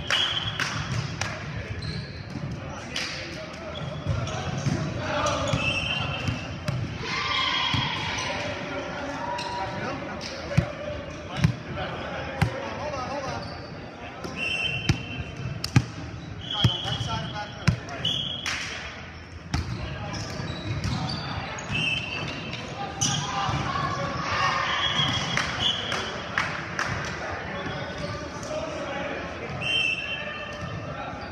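Volleyball rally on an indoor hardwood court: sharp slaps of hands and arms on the ball, with the loudest hits bunched in the middle, among players' shouted calls and short high squeaks of sneakers on the floor.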